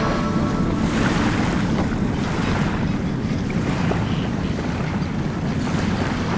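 The song's last notes die away about a second in, giving way to a steady rushing noise like sea surf or wind.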